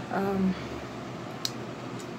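A brief voiced sound from a woman near the start, then steady room noise broken by a single sharp click about a second and a half in.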